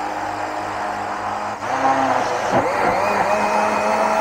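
Electric countertop blender running steadily, puréeing red-flesh dragon fruit with milk into a smooth liquid. The motor's pitch dips briefly and recovers about two and a half seconds in.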